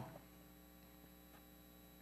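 Near silence with a faint, steady electrical mains hum.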